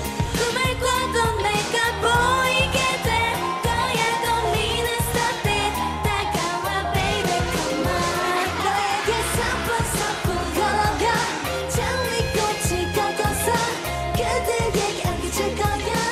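K-pop girl group singing into handheld microphones over an upbeat pop backing track with a steady dance beat.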